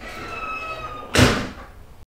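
A door closing: a drawn-out high squeak, then a loud slam about a second in that fades quickly.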